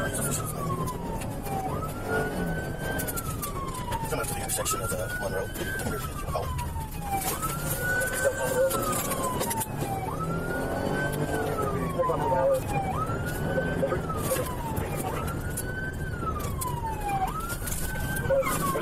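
A police car siren wailing in repeated cycles, each rising quickly and falling slowly, about every two and a half seconds. It is heard from the pursuing patrol car, over its engine and road noise.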